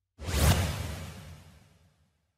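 A single swoosh sound effect from an animated channel-logo ident: it comes in suddenly a moment in, peaks almost at once and fades away over about a second.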